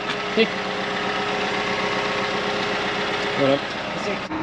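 John Deere tractor's diesel engine idling steadily.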